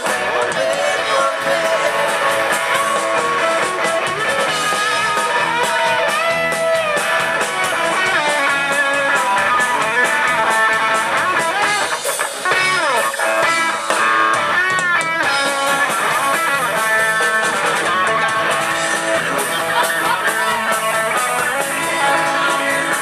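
Live rock band playing loudly, with electric guitars to the fore over bass and drums.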